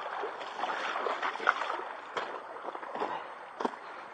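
Creek water running steadily, a soft rushing that fades a little toward the end, with a couple of short sharp knocks from handling, one about two seconds in and one near the end.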